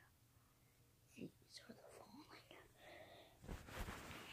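Mostly near silence with faint whispered voice, then a short burst of handling noise on the phone's microphone near the end as the phone is moved.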